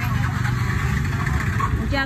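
Busy outdoor market background: a steady low rumble with indistinct voices of people nearby.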